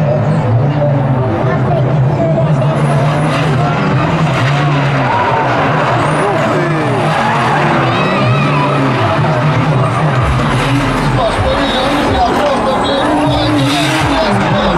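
Drift cars' engines revving hard, the pitch rising and falling as they slide sideways in tandem, with tyres squealing on the tarmac.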